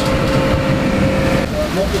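Paramotor engine running at a steady idle with a constant hum, breaking off abruptly about one and a half seconds in; a voice follows near the end.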